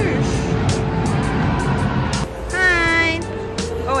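Hockey arena crowd noise with music playing, a dense rumble for the first two seconds that then thins. A voice calls out about two and a half seconds in.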